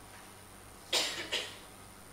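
A person coughing twice in quick succession about halfway through, over a faint steady room hum.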